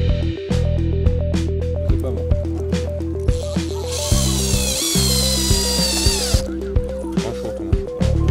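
Background music with a steady beat; about halfway through, a Hyundai 18 V cordless drill drives a screw into a sign board for about two seconds, its whine falling in pitch before it stops.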